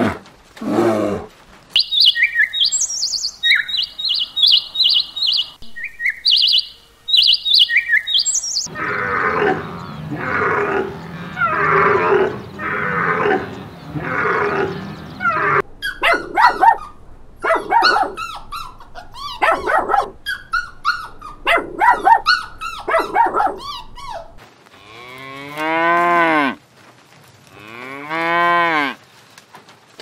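A run of different animal calls, ending with a cow mooing twice near the end, each a long call that rises and falls in pitch.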